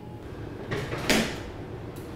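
Brief scraping handling noise about a second in, swelling and fading within about half a second, as a light fixture on a low floor stand is set down on the floor.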